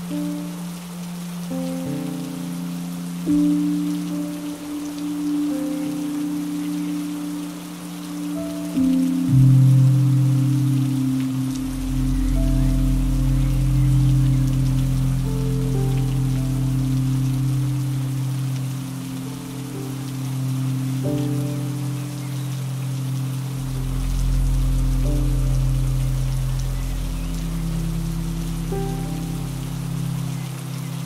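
Steady rain falling, with slow, soft music of sustained low notes and chords over it; deeper bass notes come in about a third of the way through.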